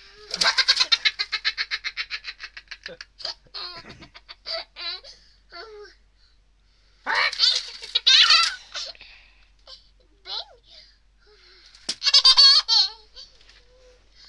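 A young child laughing: a long run of quick, high-pitched giggles in the first three seconds, then two more bouts of laughter about seven seconds in and near the end.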